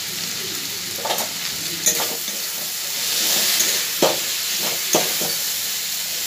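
Chopped banana flower sizzling as it fries in a metal wok, with a metal spatula scraping and knocking against the pan about four times as the mixture is turned.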